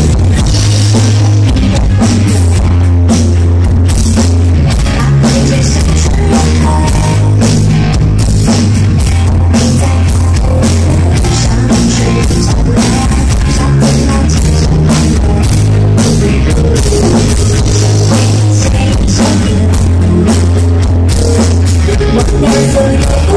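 A live rock band playing loud: drum kit and electric guitar over a steady bass line, heard from within the audience.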